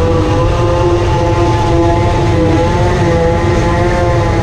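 A large engine running loud and steady at constant revs, with a droning whine over a low rumble.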